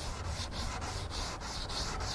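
Wet 600-grit sandpaper rubbed back and forth by hand over a headlight lens, a scratchy hiss pulsing at about three strokes a second as it takes off the yellowed oxidation.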